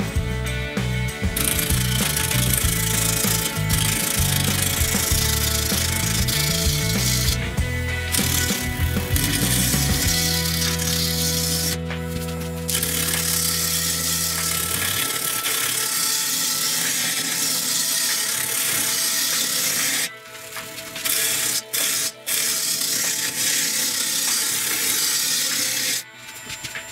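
Background music with a shifting bass line, over a steady hiss of a gouge cutting a spinning damp birch blank on a wood lathe. The hiss breaks off briefly a few times near the end.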